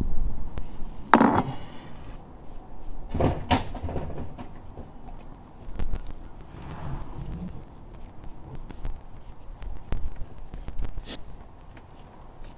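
Handling noise from wiping the bare cylinder head's gasket face with a microfibre cloth: rubbing and rustling with a few light knocks and clicks, the loudest about a second in and about three and a half seconds in.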